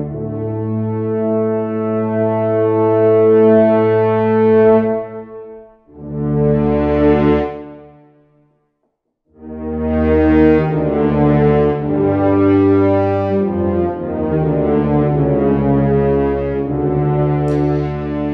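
Spitfire Audio Abbey Road ONE Grand Brass sampled ensemble of four French horns with a tuba in octaves, played legato from a keyboard. A long held note, a short swell, a brief break, then a slow connected melody of changing notes.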